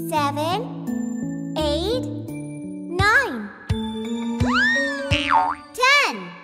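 Children's song backing music with a steady stepping bass line, over which a child's voice calls out the numbers up to ten one at a time, each call sweeping up and then down in pitch in a bouncy, cartoonish way.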